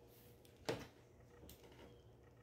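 Near silence: room tone, broken once by a single short click about two-thirds of a second in.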